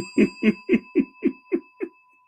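A man laughing in a quick run of about eight 'ha' pulses, about four a second, over a bright bell-like chime that keeps ringing and fades after the laugh stops.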